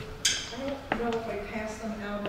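People talking in the background, unclear and not addressed to the room, with a sharp high clink about a quarter of a second in and a short knock just before one second in.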